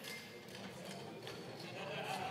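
Faint murmur and room tone of a large debating chamber, with a few light clicks and taps.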